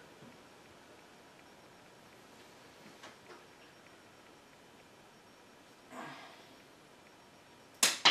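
Concave bonsai cutter snipping through a Japanese maple branch: a couple of faint clicks, a softer cut about six seconds in, then a loud, sharp snap near the end.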